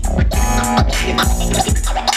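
DJ scratching a record on turntables over a hip-hop beat with heavy bass; the scratched sounds sweep rapidly up and down in pitch.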